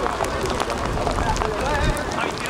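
Unintelligible shouts and calls of players across a football pitch, over a steady low rumble.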